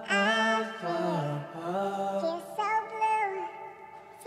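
Vintage soul-style vocal sample playing back: a man's own sung vocal, pitch-tuned and stacked into a choir-like four-voice harmony with reverb, holding long notes across a few short phrases.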